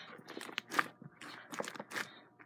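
Slime being kneaded and squished by hand as lotion is worked into it, making faint, irregular sticky clicks and crackles.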